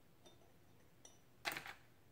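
Near-silent room tone with a few faint small clicks, then a short spoken word about one and a half seconds in.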